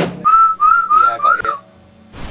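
Someone whistling four short notes in a row, each bending slightly up and then down, stopping about a second and a half in; a loud band hit cuts off right at the start.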